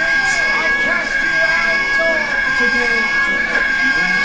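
Animated film soundtrack played off a screen: music with short, bending character voices, under a steady high-pitched whine.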